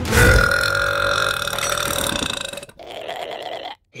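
A long, loud belch held at one steady pitch for about two and a half seconds, then fading and cut off abruptly.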